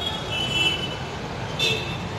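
Metro train running on the elevated track overhead: a steady low rumble with high wheel squeal coming and going.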